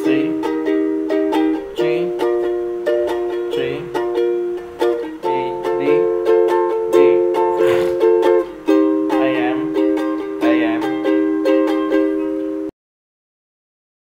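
Ukulele strummed in a steady rhythm through the chords Em, C, G, D and Am, changing chord every couple of seconds. The strumming cuts off abruptly about a second before the end, leaving dead silence.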